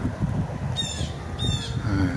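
A bird calls twice, two short high calls about three-quarters of a second apart, over a steady low background rumble.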